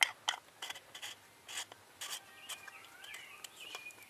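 A small metal canned-heat fuel can being handled, giving a few short rubbing, scraping strokes in the first two seconds. Faint high gliding chirps follow in the second half.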